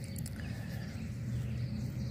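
Dry grass and nest fur rustling, with a few faint clicks near the start, as a gloved hand parts the cover of a cottontail rabbit nest. A steady low rumble runs underneath.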